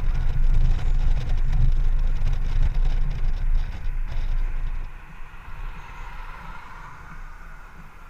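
Honda Gold Wing GL1800 motorcycle on the road: wind rushing over the camera microphone with the engine running under it. The noise drops off sharply about five seconds in as the bike slows behind traffic.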